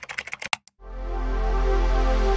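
A quick run of sharp typing-like clicks, then, just under a second in, a music sting with a deep bass swelling up and holding: an edited intro sound effect.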